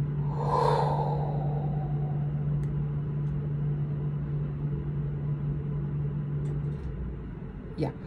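A steady low hum on one unchanging pitch that stops about seven seconds in, with a brief breathy swish about half a second in.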